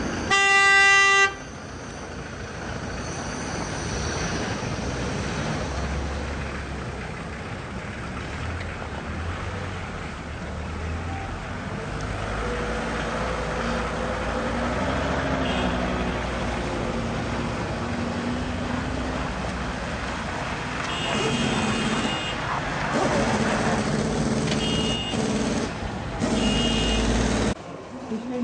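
A vehicle horn blast about a second long at the start, the loudest sound, followed by the steady low rumble of engines and tyres from slow traffic moving through snow and slush.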